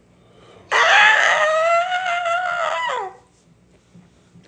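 A single loud rooster crow, about two and a half seconds long, starting suddenly, holding one pitch and dropping at the end.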